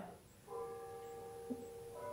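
A faint steady ringing tone of several held pitches at once, starting about half a second in.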